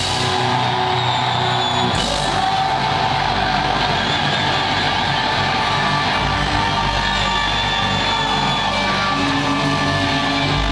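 Alternative metal band playing loud live, with distorted guitars and drums. A crash comes at the start and another about two seconds in, where the deep bass comes back in and the full band carries on.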